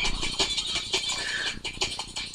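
Rapid, irregular clicking and rattling, several clicks a second.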